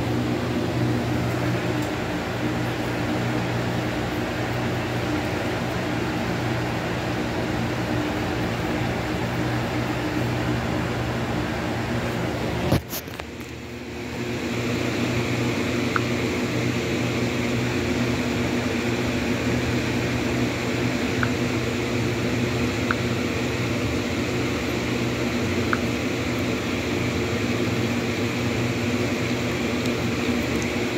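A steady mechanical hum with several held low tones, like a fan or air conditioner running. About thirteen seconds in, a sharp click is followed by a brief drop in the hum, which then comes back, with a few faint ticks later on.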